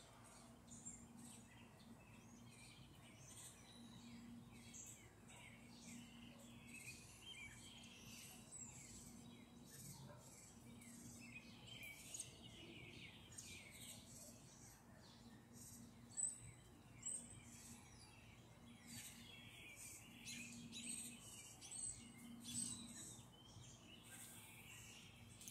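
Faint birds chirping and singing in many short, varied calls throughout, with two slightly louder chirps about two-thirds through, over a low steady hum.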